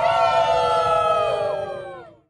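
A group of young voices holding one long shouted cheer, drifting slightly down in pitch and fading out near the end. It is the drawn-out last syllable of a New Year greeting.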